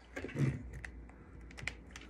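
Typing on a laptop keyboard: a soft thump about half a second in, then a few scattered key clicks.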